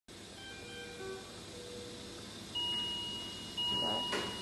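Electronic alarm tones from bedside medical equipment: a few short tones at different pitches, then, from about two and a half seconds in, a steady high-pitched tone that breaks off briefly about once a second.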